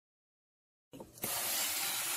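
Steam iron letting out a burst of steam onto fabric: a steady hiss that starts about a second in, after dead silence.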